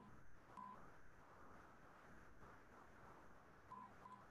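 Near silence: faint room noise with two short, faint electronic beeps, one just after the start and one near the end.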